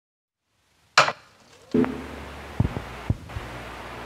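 Handling of a shrink-wrapped CD album: one sharp knock about a second in, then a few softer knocks and taps as hands take hold of the package.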